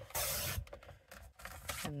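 Paper trimmer's sliding blade slicing a sheet of cardstock in half: one short scraping swipe about half a second long near the start, followed by a few faint taps.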